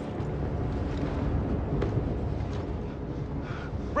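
A low, steady rumble from the film's soundtrack, with a faint click about two seconds in.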